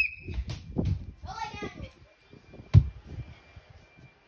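A person's voice calls out briefly early on, among low handling bumps. A single sharp knock comes near three seconds in.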